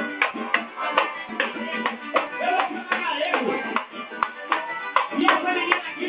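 Live samba band playing: sharp percussion strikes about two to three a second under voices, with dull, muffled treble.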